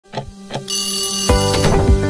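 Intro jingle sound effects: two short clock ticks, then a ringing alarm-clock bell. Just over a second in, upbeat music with a steady drum beat kicks in.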